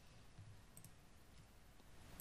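Near silence: faint room tone with a couple of soft computer-mouse clicks a little under a second in.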